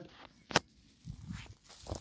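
A single sharp click about half a second in, followed by faint low rustling.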